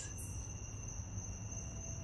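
Crickets trilling steadily, a continuous high-pitched drone.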